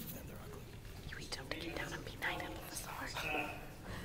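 Hushed, whispered speech close to the microphone, in a few short phrases.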